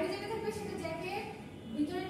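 Only speech: a woman lecturing in a room.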